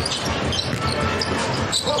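Game sound from a basketball court in a packed arena: a basketball being dribbled on the hardwood under the crowd's steady din.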